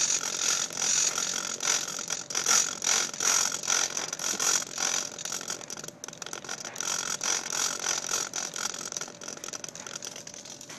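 Small hobby RC servos driving the wing's elevon pushrods, a busy whirring and gear-chattering sound of many quick repeated movements, with a brief pause about six seconds in.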